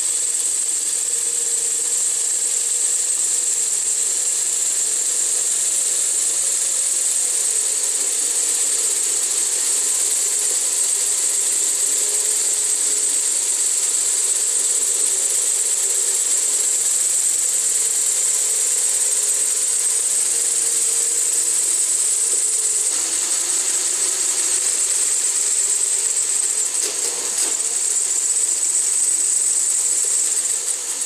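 Small electric motors and metal gearing of a Meccano model potato harvester and tractor running: a steady high whine with mechanical rattling, and a lower motor hum that switches on and off several times.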